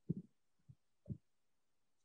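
A few faint, soft low thumps, about four in two seconds, with near silence between them.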